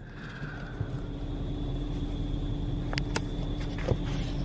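Drive-through automatic car wash machinery running, heard muffled from inside the car's cabin. A steady low rumble and hum carries a faint steady whine and builds slightly in loudness. Two sharp clicks come about three seconds in.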